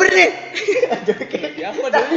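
Men talking with chuckling laughter.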